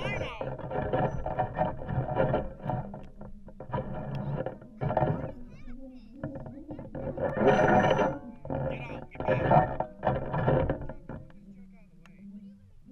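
People's voices talking and exclaiming in bursts; no other sound stands out above them.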